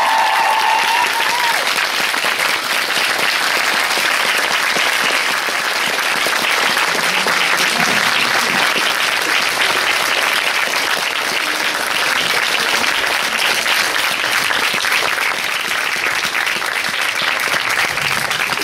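Audience applauding steadily for a long stretch, welcoming guests onto the stage, with a high whooping cheer near the start.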